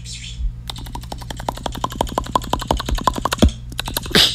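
Beatboxer's mouth clicks: a rapid click roll, about a dozen sharp tongue clicks a second for roughly three seconds, many with a short hollow pop.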